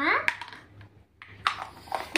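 A few light clicks and taps of small plastic toy dishes being handled, the sharpest about a second and a half in.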